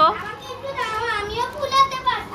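A young child talking in a high-pitched voice.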